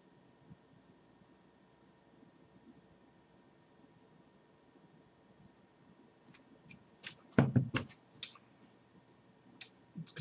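Near-silent room tone for about six seconds, then the small mouth sounds of tasting a sip of beer: a few short clicks and lip smacks, with one louder breathy sound about seven and a half seconds in.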